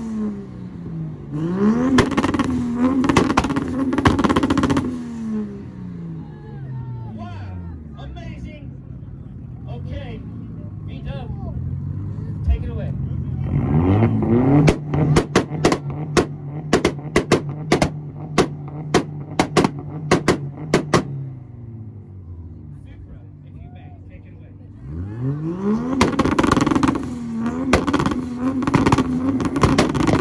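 Performance car engines, a Toyota Supra's 2JZ and a VW Golf's, revved hard in a rev battle, pitch rising and falling repeatedly. Midway, one engine is held steady on a two-step launch limiter for about seven seconds with a rapid string of sharp pops and bangs, and the hard revving returns near the end.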